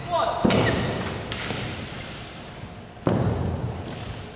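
Badminton rally: two sharp racket strikes on the shuttlecock, one just under half a second in and one about three seconds in. Between them come the thuds of players' footwork on the court mat, with short shoe squeaks after the first strike.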